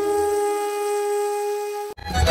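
Intro music: a flute holds one long steady note. The low drone under it drops out about half a second in, and the note cuts off suddenly near the end.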